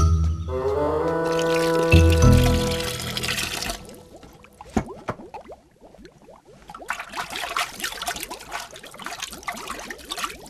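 A short music cue with a low hit about two seconds in, then, after about four seconds, quieter water bubbling and gurgling in a bathing pool.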